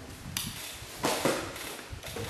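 Off-camera handling noise: a sharp knock about a third of a second in, then a longer rustling, scraping sound about a second in.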